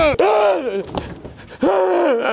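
A man wailing in panic without words. A cry falls away just after the start, and a second long cry comes near the end. A single sharp knock is heard at the very start.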